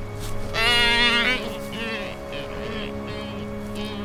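An albatross at the nest gives one wavering call lasting under a second, about half a second in, followed by a few shorter, fainter calls. Background music with held notes runs underneath.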